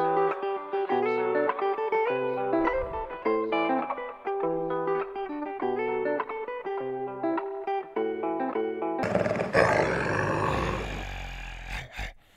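Song outro: a plucked guitar melody playing on its own, with no beat or vocals. About nine seconds in it gives way to a rush of noise that fades away.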